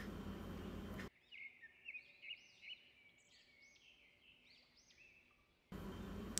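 Near silence with a bird chirping faintly: a run of short, high, arching chirps over several seconds. Low room noise is heard in the first second and again at the very end.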